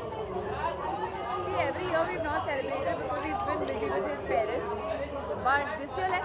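Speech and overlapping chatter of several people in a crowded hall, with no other distinct sound.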